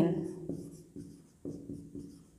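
Marker pen writing on a whiteboard: a few short strokes about half a second apart as a word is written.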